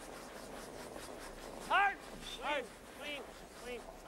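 Curlers on the ice calling short shouted sweeping instructions ("No", "Clean"), four calls in the second half, over a steady arena hum.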